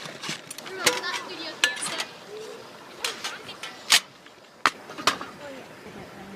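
Hinged steel panels of a folding Firebox camp stove being snapped together: a series of sharp metal clicks and clacks, irregularly spaced, as the panels lock into place.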